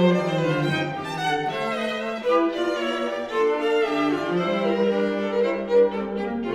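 String trio of violin, viola and cello playing a fast, graceful movement in G minor, several bowed lines moving together over the cello's low notes, with a brief loud accent just before the end.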